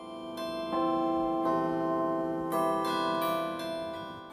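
Tuned metal chime rods of an electric carillon, struck one note after another. The notes ring on and overlap like cast bells.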